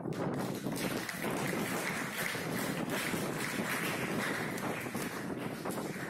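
Steady rushing noise like wind on the microphone, an even hiss with no clear voice or music above it.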